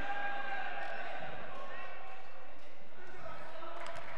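Steady ambience of a large gymnasium during a stoppage in play, with faint, distant voices.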